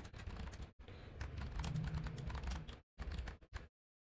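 Typing on a computer keyboard: a quick, uneven run of key clicks as a short sentence is typed, stopping shortly before the end.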